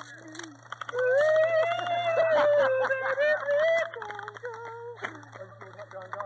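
A man singing in a high voice: one long, wavering sung note that runs from about a second in to about four seconds, then a shorter, lower note near the five-second mark.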